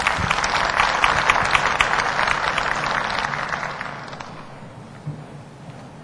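Audience applauding. The clapping is strongest in the first few seconds, then dies away over the last two seconds.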